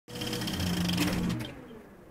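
Electronic intro sound effect: a dense buzzing whir with several held tones, fading out over the second half.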